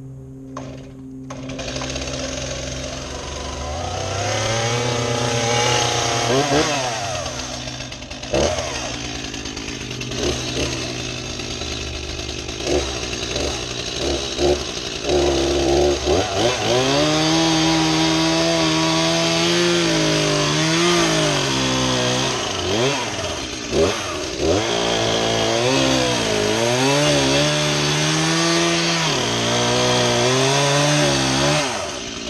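STIHL chainsaw running and cutting into a large pine log. Its engine revs up and down repeatedly, with several sharp drops in pitch between throttle bursts in the second half.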